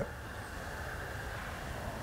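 Steady room tone: an even low hum and hiss with a faint steady high whine, no distinct events.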